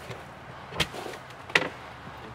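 Two sharp clacks, about three quarters of a second apart, as outdoor-shower gear is handled in a storage compartment at the back of a camper van.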